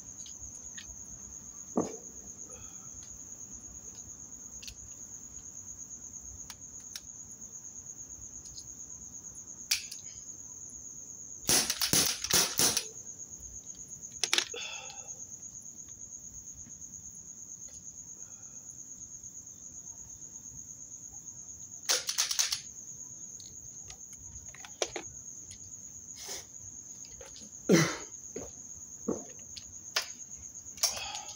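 Sharp cracks of shots at a row of cans and bottles, spaced out and irregular, with a quick run of several about twelve seconds in and a loud one near twenty-two seconds. Crickets chirp steadily throughout.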